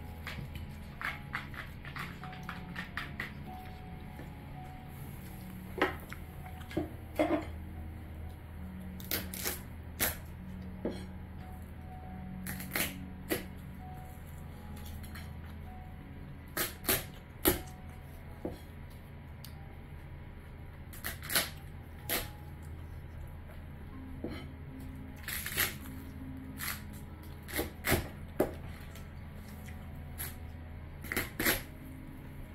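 A knife cutting through grilled crab shell on a wooden board: irregular crisp, sharp cracks and taps, a few of them much louder than the rest.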